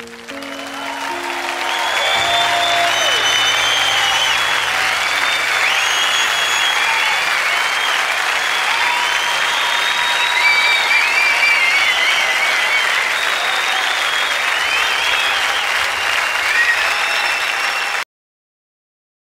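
Live concert audience applauding, with whistles and cheers, at the end of a song. The band's last held chord fades out in the first few seconds as the clapping swells, and the applause then holds steady until it cuts off suddenly.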